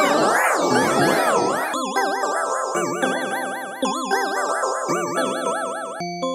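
A Samsung phone stock tone played with a chorus effect applied twice, so each melody note comes as several warbling, detuned copies. For the first two seconds it is dense and loud; after that the notes come one at a time and slowly fade.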